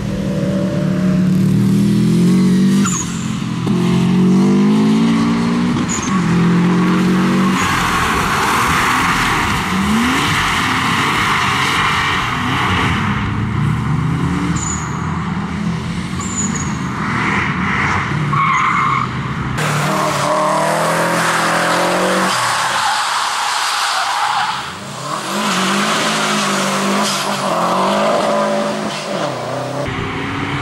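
Porsche 911 Carrera flat-six revving up and down hard through tight corners, with tyres squealing. About two-thirds of the way through it cuts suddenly to a different car, a Fiat Bravo, revving hard.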